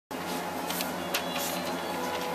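A steady whirring drone with a faint hum and a few soft clicks.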